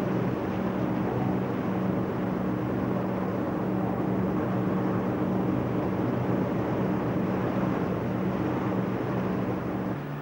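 Medina-class water-jet lifeboat running at speed: a steady low engine hum under the rushing hiss of hull and spray through the waves.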